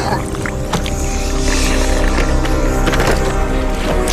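Dramatic film score: sustained chords held over a deep bass, with a few short sharp hits or whooshes from the action soundtrack.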